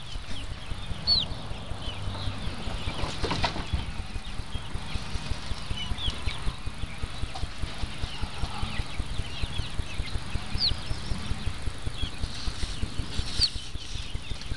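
A fast, regular low thudding, about five beats a second, runs under a few short, high bird chirps that glide in pitch.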